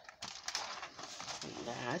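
Crackling and clicking of a plastic-windowed ornament box being handled right against the microphone, with a short vocal sound near the end.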